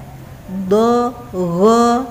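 A woman's voice reciting two drawn-out Arabic letter syllables in a sing-song reading tone, the first about half a second in and the second just before the end.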